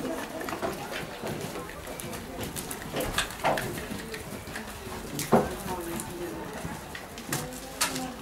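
Indistinct background voices, with several short sharp knocks scattered through, the loudest about five seconds in.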